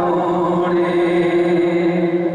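A man singing a Punjabi naat into a microphone, holding one long steady note.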